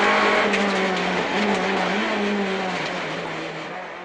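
Renault Clio Williams rally car's 2.0-litre four-cylinder engine heard from inside the cabin, running steadily at speed with a few brief dips in pitch. It fades out over the last second or so.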